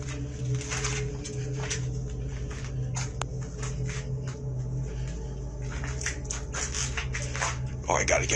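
A steady low hum under many short clicks and knocks, with faint voice-like sounds.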